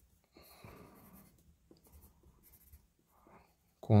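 Wooden graphite pencil drawing on paper: soft scratchy strokes, a run of them about half a second in and a few shorter ones later.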